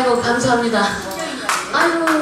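A woman's voice talking, with a few sharp hand claps near the end.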